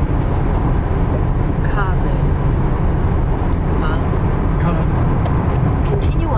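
Steady road and engine noise inside a car cabin at freeway speed, a constant low rumble. Faint snatches of voice come through a few times.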